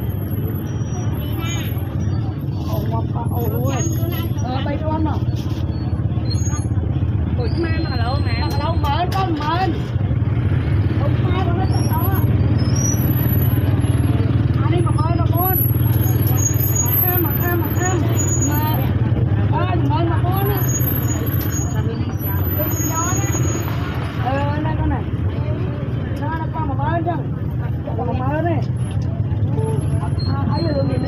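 Several people talking at a busy market stall, their voices coming and going over a steady low rumble.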